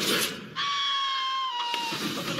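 A brief hiss, then one long, high-pitched shriek with a steady pitch that dips slightly about a second and a half in: a cartoon creature's cry.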